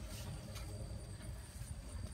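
Faint rustling of luffa vine leaves and stems being handled as a luffa is worked free of a wire, over a low steady rumble.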